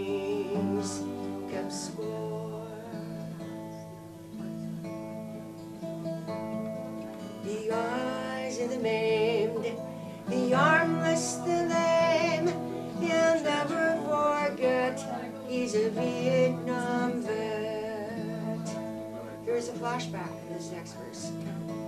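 Twelve-string acoustic guitar strummed in steady chords, with a woman singing a folk song over it; the first several seconds are mostly guitar, and her voice comes in strongly about seven seconds in.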